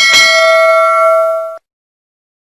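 A bell-ding sound effect for the notification bell of a subscribe-button animation: a single struck chime that rings on with several overtones and cuts off suddenly about a second and a half in.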